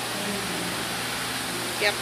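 Electric fan running, a steady loud rush of air noise.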